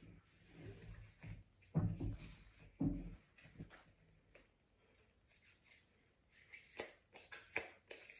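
A tarot deck handled and shuffled by hand: scattered soft card clicks and rustles, with two duller thumps about two and three seconds in and a flurry of clicks near the end.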